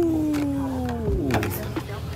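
A young man's long falsetto howl, a single drawn-out "ooo" that slides slowly down in pitch and stops about a second in, followed by a couple of short knocks.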